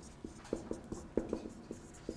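Marker pen writing on a whiteboard: an irregular run of short taps and brief squeaks as the letters are stroked out.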